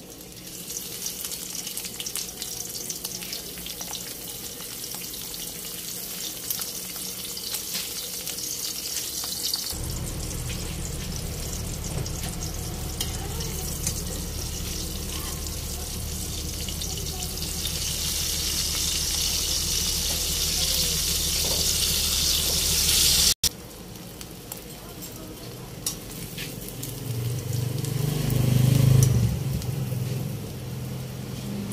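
Dried salted fish (dalagang bukid) frying in hot oil in a wok: a steady sizzle that swells louder about two-thirds of the way through, with a low hum under it in the middle. Near the end there is a louder low rumble.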